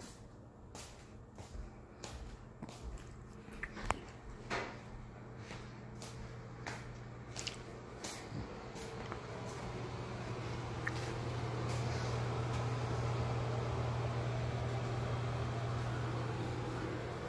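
Footsteps on a hardwood floor, a series of sharp irregular clicks about one or two a second. From about halfway through, a steady low mechanical hum with an airy hiss builds up and grows louder to the end.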